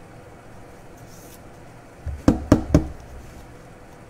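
Three quick knocks in a row, about a quarter second apart, a little over two seconds in: a trading card in a clear hard plastic holder being knocked against the tabletop.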